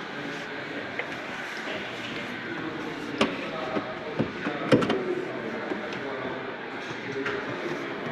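Two sharp clicks about a second and a half apart as someone gets into a Toyota Aygo X's driver's seat and handles the seat and steering wheel.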